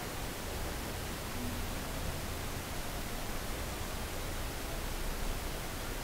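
Steady hiss of a recording's background noise, with no clicks or other sounds in it.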